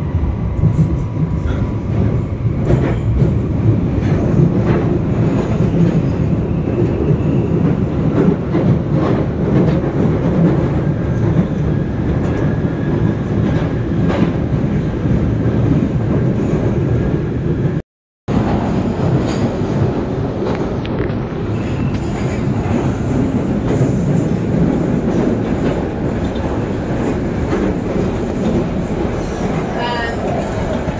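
London Underground Northern line Tube train (1995 stock) running through a tunnel, heard from inside the carriage: a loud, steady rumble of wheels on rail with scattered clicks and rattles. The sound cuts out for a moment about 18 seconds in, then the same running noise carries on.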